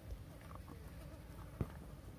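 A Komodo dragon tearing at a wild boar carcass: a few short wet clicks and crackles of flesh being pulled and chewed, the sharpest about one and a half seconds in, over a steady low rumble.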